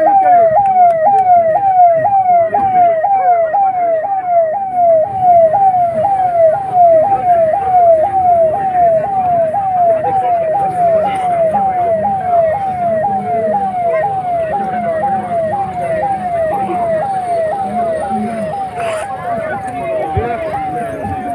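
Ambulance's electronic siren sounding in quick falling sweeps, about two a second, starting suddenly and running on steadily.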